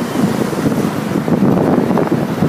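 Steady rumble of a city bus on the move, heard from inside, with wind buffeting the microphone.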